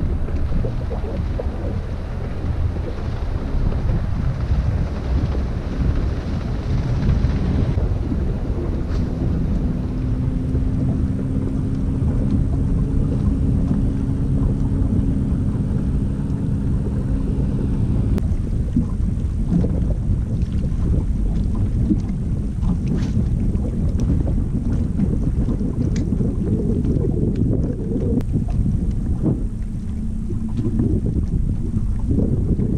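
Wind buffeting a boat-mounted camera's microphone, a loud, steady low rumble. A low steady hum joins it for several seconds in the middle.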